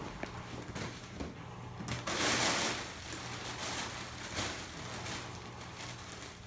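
Rustling and handling noise from a camera being moved about, with a loud rustle for about a second, two seconds in, and a few small knocks over a faint steady low hum.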